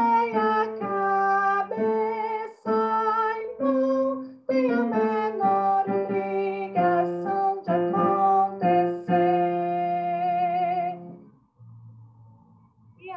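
A woman singing one vocal line of a choral arrangement alone and unaccompanied, sight-reading it note by note with slight vibrato on the held notes. The singing stops about a second before the end.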